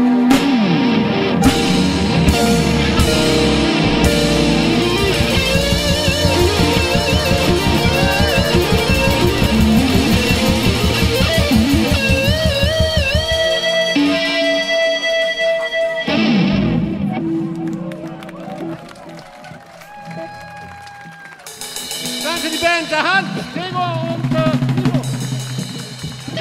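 Live rock band playing electric guitars, bass, drums and keyboard over a steady beat. About halfway through the drums and bass stop, leaving held, wavering notes that die down and then swell again near the end.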